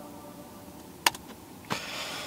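Quiet room tone in a car cabin, with one sharp click about a second in and a soft rustle of movement near the end.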